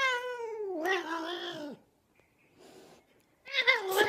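A domestic cat meowing: one long, drawn-out meow of about two seconds that rises and then falls, followed after a pause by a shorter meow near the end.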